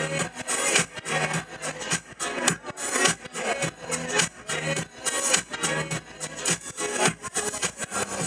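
Live band music with electric guitar, carried by a busy, even rhythm of short strokes.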